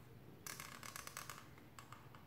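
Felt-tip marker drawn across paper: one scratchy stroke starting about half a second in and lasting about a second, followed by a couple of faint ticks of the tip near the end.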